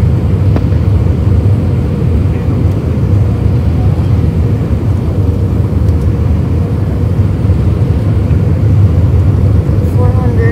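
Airbus A319 cabin noise on final approach: a steady low rumble of engines and airflow heard through the fuselage, with a faint steady tone above it.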